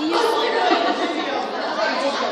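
Indistinct chatter of several people talking at once, echoing in a large hall.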